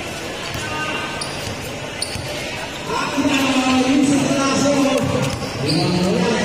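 A basketball bouncing on the court during play over the noise of a large crowd of spectators, with voices growing louder about halfway through.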